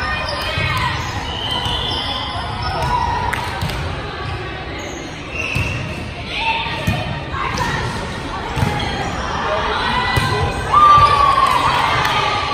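Volleyball rally in a gymnasium: sharp slaps of the ball off players' arms and hands, echoing in the hall, with girls' voices calling out. The loudest call comes near the end.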